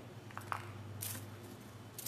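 Faint handling noises at a work table: two light clicks about half a second in and a brief rustle about a second in, over a steady low hum.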